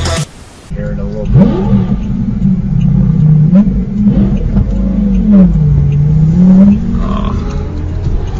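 A Lamborghini's engine revving hard as it accelerates away. Its pitch climbs and drops several times, with a long dip and rise near the end.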